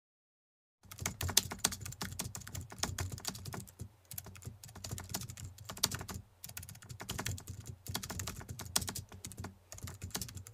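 Typing on a keyboard: rapid, irregular key clicks in runs with brief pauses, starting about a second in. It accompanies on-screen text appearing letter by letter.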